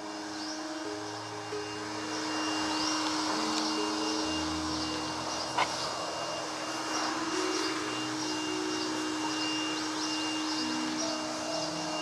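Electric leaf blower running steadily: a rush of air with a held motor whine, blowing leaves off a bonsai tree.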